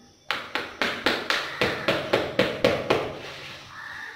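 A small hand tool chopping and tapping into soil in a tray, about a dozen quick, sharp strikes at about four a second, stopping about three seconds in.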